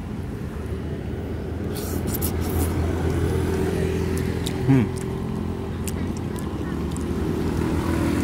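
Street traffic: a motor vehicle's engine running steadily, slowly growing louder, with a few light clicks about two seconds in.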